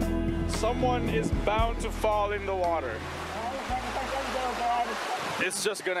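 Rushing creek water over rocks, with people's voices, under background music that ends about five seconds in.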